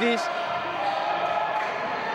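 A basketball being dribbled on a wooden court, under the steady background noise of the hall.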